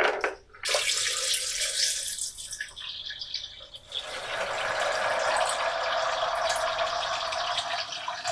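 Water poured from a pitcher into a blender jar of soaked soybeans, in two stretches: a thinner, hissy pour from under a second in, then a fuller, steady pour from about four seconds in.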